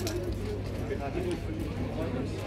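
Background chatter of people talking at moderate level, with a single sharp click right at the start.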